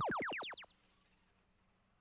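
FIRST Power Up field sound cue for a Boost power-up being played: a rapid run of rising electronic sweeps that fades out in under a second.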